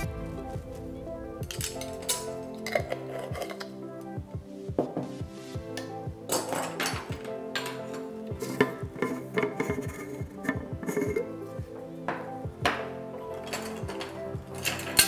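Background music over repeated light clinks and taps of a metal measuring spoon against glass jars and a glass mixing bowl as powders are scooped and tipped in.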